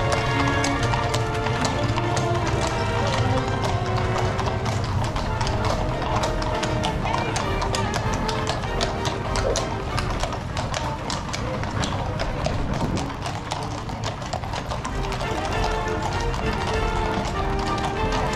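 Horses' hooves clip-clopping on brick paving as a line of horse-drawn carriages passes, the strikes coming quickly and overlapping from several horses. Music plays throughout underneath.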